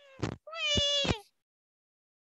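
A high-pitched, drawn-out vocal sound, heard twice in the first second or so, with a few short knocks among them.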